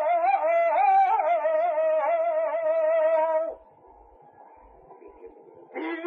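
Male flamenco voice singing a saeta unaccompanied, holding a long, wavering, ornamented line that breaks off about three and a half seconds in. After a pause with faint background noise, the next sung phrase begins near the end.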